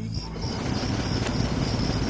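Reversed hip-hop recording: a swell of noise and low rumble that rises steadily in loudness, with a faint rapid high-pitched pulsing that stops about three-quarters of the way through.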